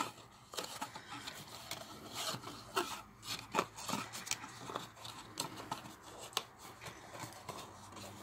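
Cardstock rubbing, scraping and tapping as the lid of a paper-craft box is handled and pressed back on, with many small irregular clicks.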